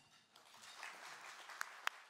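Audience applauding faintly, starting a moment in, with a few sharper clicks standing out near the end.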